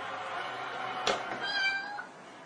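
A sharp click about a second in, then a short cat meow falling in pitch near the end, over a steady low hum.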